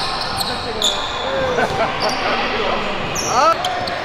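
A basketball being dribbled on a hardwood gym floor, several bounces at an uneven pace, with voices in the gym behind.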